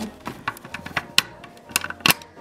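Light, irregular plastic clicks and taps as a toy figure is knocked against a plastic toy vending machine, about eight in two seconds, over quiet background music.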